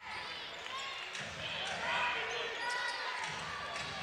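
Basketball being dribbled on a hardwood court, with arena crowd murmur and faint distant voices.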